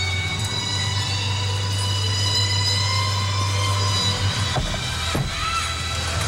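The murmur of a large arena crowd with background music holding long, steady notes. There are two soft knocks about four and a half and five seconds in.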